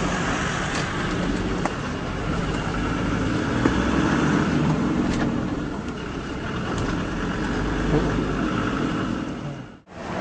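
Vehicle engine and road noise heard from inside the cab while driving through town traffic: a steady low rumble with a few small clicks and knocks. It cuts off abruptly just before the end.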